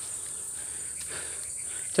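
A chorus of insects in the forest: a steady, high-pitched shrill drone with no break.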